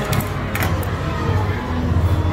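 Restaurant room sound: indistinct chatter of other diners over background music, with a few light clicks.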